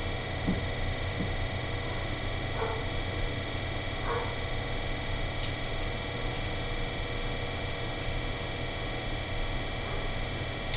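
Electric potter's wheel running at steady speed, a constant low hum throughout.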